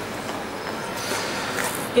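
Audience applauding, a steady wash of clapping.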